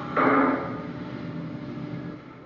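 Soundtrack of a played-back exhibition video: a short noisy burst, then a steady droning noise.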